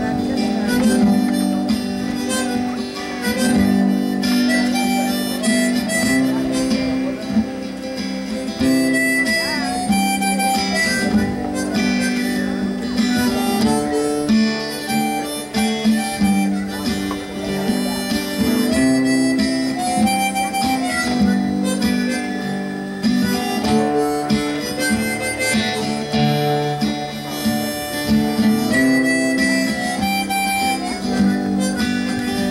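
Harmonica in a neck rack played together with a strummed acoustic guitar: a continuous song with held, changing harmonica notes over steady chords, heard through a live PA.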